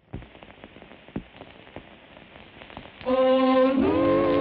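Crackling and scattered pops of an old film soundtrack, then about three seconds in, the cartoon's opening music starts loudly with sustained notes.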